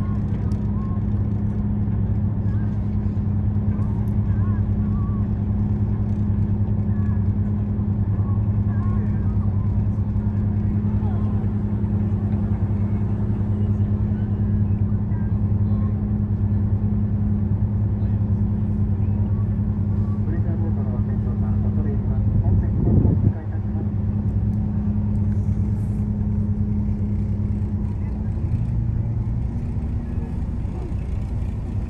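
A boat's engine running steadily, a constant low hum, with a short thump about 23 seconds in.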